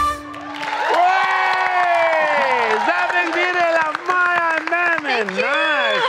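The backing music cuts off, and a single voice then holds one long sung note, bending slowly down, before breaking into a run of exaggerated swoops up and down in pitch.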